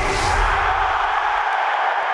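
Stadium crowd cheering used as part of a football channel's intro sting, over a deep bass rumble that stops about a second and a half in.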